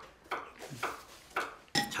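Metal chopsticks and dishes clinking lightly: four or five short, separate taps.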